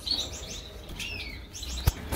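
Small cage finches chirping: several short, high chirps, some with a quick falling note, then a single sharp click just before the end.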